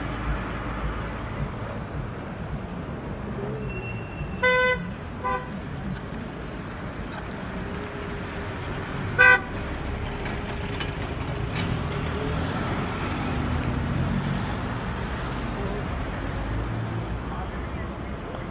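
Street traffic with car horns: a short toot about four and a half seconds in, a second brief one just after, and another around nine seconds in, over the steady noise of passing cars.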